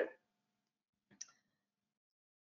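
A single short, faint click about a second in, in an otherwise quiet pause between spoken sentences.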